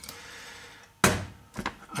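A single hard knock at the workbench about a second in, the loudest sound here, with a soft scraping before it and a few lighter clicks after.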